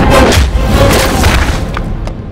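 Heavy booming hit sound effects from a film fight, layered over a loud action background score.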